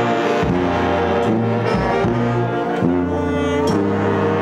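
New Orleans brass band music: trombones and other horns holding notes over a low bass line that steps to a new note about once a second.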